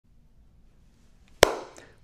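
A single sharp hand clap about one and a half seconds in, followed by a brief ring of room echo, over faint room tone.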